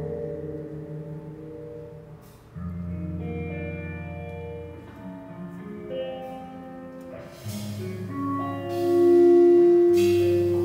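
Live jazz group playing a slow, atmospheric passage of long, overlapping held notes over sustained bass notes. The music builds to a loud swell near the end.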